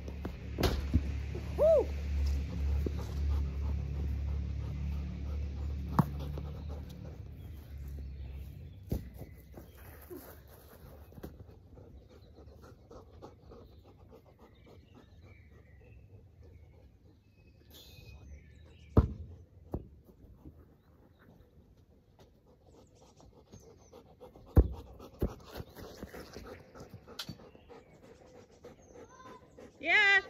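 A dog panting near the microphone, with a low rumble through the first several seconds. Sharp thuds of a football being kicked come about six seconds in and twice more later.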